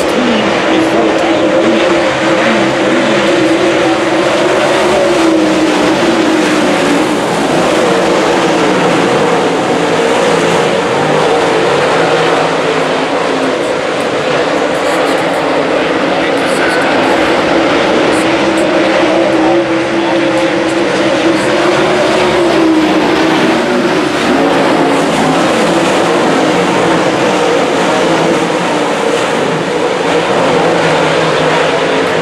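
A field of dirt late model race cars running laps on a dirt oval. Their V8 racing engines are loud and continuous, the pitch swelling and falling as the pack passes and accelerates off the corners.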